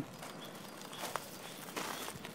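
Quiet footsteps on garden ground, a few soft steps and scuffs, one about a second in and another near the end.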